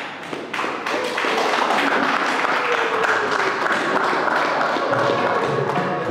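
Audience applauding: many hands clapping steadily, starting suddenly at the opening.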